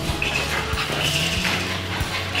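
French bulldog puppy whining in short high-pitched cries during play, over steady background music.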